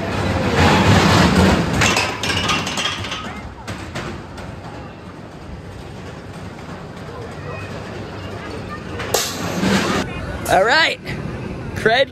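A Zyklon-style steel roller coaster car running along its track, loud for the first few seconds, then fading, then passing again about nine seconds in.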